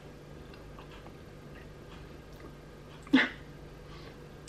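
Faint chewing, then a single short, loud dog bark about three seconds in.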